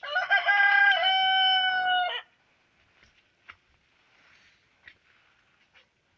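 A rooster crows once, a single crow lasting about two seconds that cuts off sharply, followed by only a few faint ticks.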